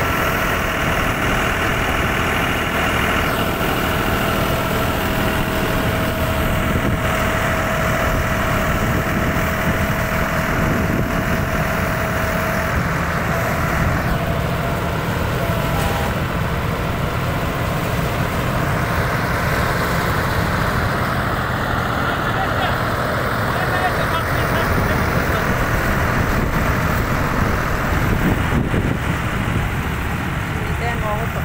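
Tractor-driven stationary thresher running during chickpea threshing: a steady, continuous mechanical drone of the tractor engine and the spinning thresher. A steady whine in it drops out a little before halfway through.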